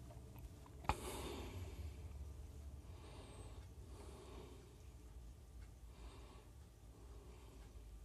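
Quiet room with a low steady hum, a single sharp click about a second in, and soft breaths of a person close to the microphone.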